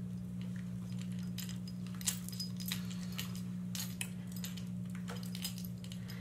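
Scattered light clicks, taps and clinks of small glass and hard objects being handled and set down, over a steady low hum.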